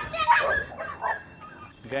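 A dog barking, loudest in the first half second or so.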